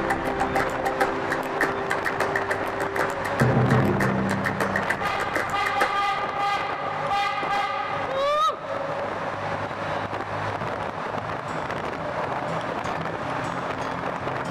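Music with a steady beat and held tones, ending about eight and a half seconds in with a quick rising glide. After that a steady rushing noise continues.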